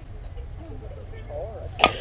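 Softball bat hitting a pitched fastpitch softball: one sharp crack near the end, the loudest sound here, over background voices.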